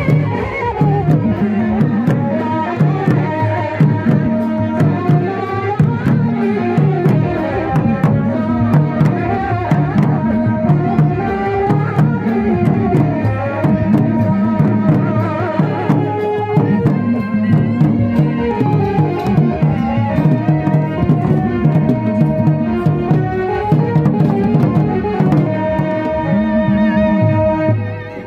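Live folk music: large hand- and stick-beaten barrel drums playing a steady rhythm under a sustained melodic line.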